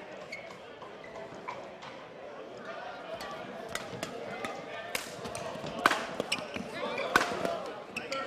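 Badminton rally: sharp racket strikes on the shuttlecock, coming thick and fast in the second half, over a steady murmur of voices from the crowd.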